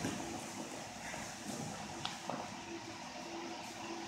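Faint shuffling of a person getting up off a padded mat, with a couple of light taps about two seconds in.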